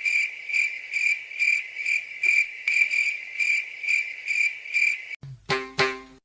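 Cricket chirping: a steady high trill pulsing about twice a second that cuts off sharply about five seconds in. A few notes of music begin just after it.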